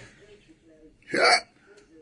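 A man's single short vocal sound, one brief syllable or catch of breath, about a second in, between quiet pauses.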